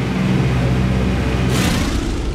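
Steady drone of a vintage twin-engine propeller airliner's piston engines. About one and a half seconds in, a sudden rushing burst breaks in as an engine fails and pours black smoke.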